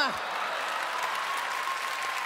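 Large audience applauding: dense, steady clapping that begins as a man's last shouted word cuts off right at the start.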